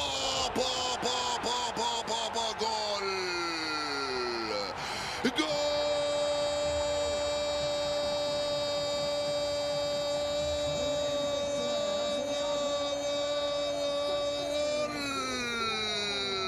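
Football commentator's long shouted goal call: a wavering cry for the first few seconds that slides down in pitch, then one note held steady for about nine seconds before it drops away near the end.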